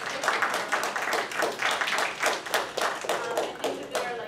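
Applause from a small audience: many hands clapping, dying away near the end.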